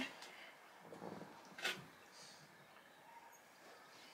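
Faint handling sounds as hands work a long synthetic ponytail hairpiece: a soft rustle about a second in and one brief sharp click or scrape at about 1.7 s, then only quiet room tone.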